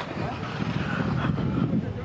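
Wind rumbling on the microphone, with voices talking indistinctly over it.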